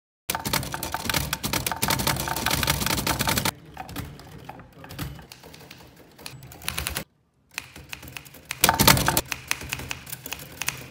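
Manual typewriter keys clacking in a fast run of strikes, then quieter and sparser strikes, a brief break, and another quick run near the end.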